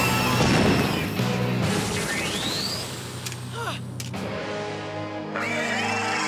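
Dramatic background music of a cartoon battle, with sound effects laid over it. There is a loud burst in the first second, a rising whoosh about two seconds in, then a couple of sharp clicks and a short falling zap around three to four seconds in.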